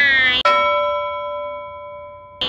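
A woman's brief high-pitched vocal exclamation, cut off about half a second in by a single struck bell-like chime, an added sound effect, whose few steady tones ring on and slowly fade away.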